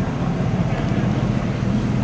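A 1965 Chevrolet Chevelle Malibu's 283 cubic-inch V8, with dual exhaust, idling steadily.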